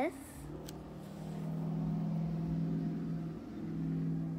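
A car engine running, a steady low hum that comes up about half a second in and holds.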